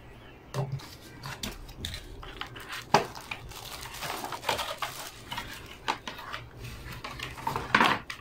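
Plastic wrapping crinkling and a cardboard box being handled as a new keyboard is unpacked, with irregular clicks and knocks. The sharpest knock comes about three seconds in.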